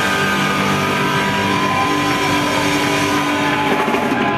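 Live punk rock band with distorted electric guitars holding sustained, ringing chords over a wash of cymbals, without a clear drum beat.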